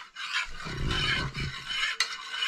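Steel kitchen vessels being handled, with irregular scraping and rubbing over a steady low rushing noise.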